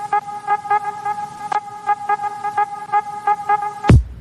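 Background music: a held, horn-like synth chord over a fast, even ticking beat, with a loud deep bass hit falling in pitch near the end.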